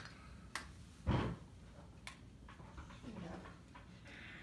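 Light handling noises: two sharp clicks and a soft thump about a second in, as a toy is pulled from a Christmas stocking. A brief low hum of a voice comes near the end.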